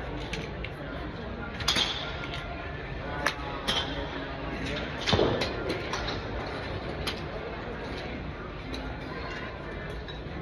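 Golf club striking balls off a driving-range mat: several sharp cracks, the loudest about two seconds and about five seconds in, over steady background noise and faint voices.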